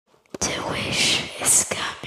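Whispered speech: a few breathy words with hissing s-sounds, starting about a third of a second in.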